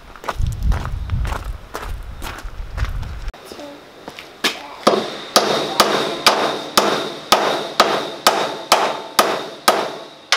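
Hammer blows on the steel frame of a utility trailer, starting about halfway through at about two strikes a second, each with a metallic ring.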